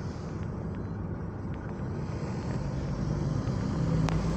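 Road and engine noise heard inside a car cabin as it drives slowly down a street. It grows louder towards the end, with a steady low hum coming in as a large truck passes close alongside.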